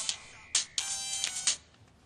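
Mobile phone ringtone: a melody of bright electronic notes that cuts off about one and a half seconds in, as the call is answered.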